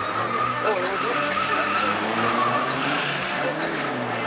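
Car drifting: its engine held at high revs while the tyres squeal steadily through a long sideways slide.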